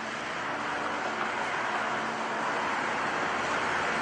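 Road traffic: a steady rushing noise that swells slowly.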